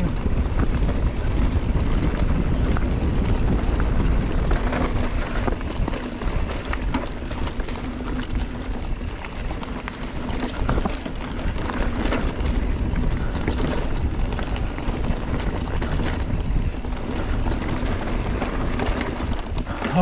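Wind buffeting the camera microphone during a fast mountain-bike descent, over the rumble of the Giant Trance 3's knobby tyres on dirt and rocks. Frequent small clicks and rattles from the bike's chain and parts run through it.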